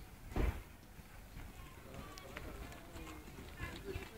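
Muffled hoofbeats of a horse cantering past on a sand arena surface, with one short, loud thump about half a second in.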